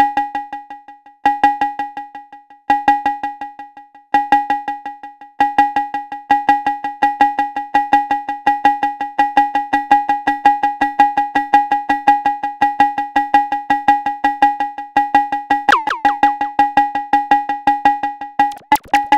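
Synthesized cowbell-like drum hits from a Thundrum drum module, triggered in a rhythmic pattern and repeated through the Moon Modular 530 stereo digital delay, so that each hit trails off in a string of decaying echoes. The pattern grows denser about five seconds in, and a short downward pitch sweep comes near the end.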